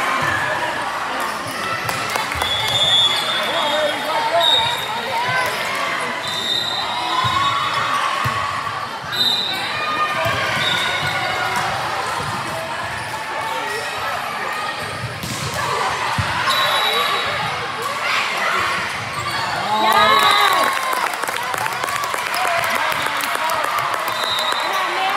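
Volleyball gym with girls' voices calling out and cheering over one another, echoing in a large hall. Through it come short high sneaker squeaks on the court floor and the knocks of balls bouncing and being hit. The voices are loudest about 20 seconds in.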